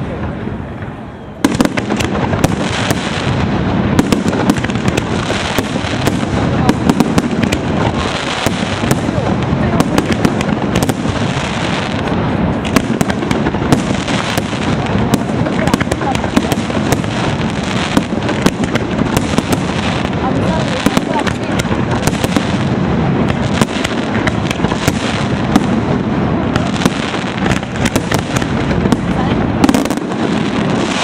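Aerial firework shells going off in a dense barrage: many sharp bangs and crackles overlap into a nearly unbroken din, which starts about a second and a half in after a brief quieter moment.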